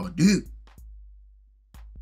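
A man's voice finishing a word, then a short pause over a low background music bed, with the music picking up again near the end.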